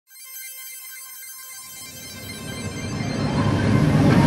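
Logo intro sting: bright, shimmering chime-like tones ring out at once, then a deep whooshing swell builds and grows steadily louder.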